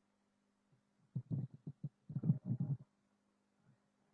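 A steady low electrical hum on the recording line, with a run of muffled low rumbling bumps for about a second and a half in the middle.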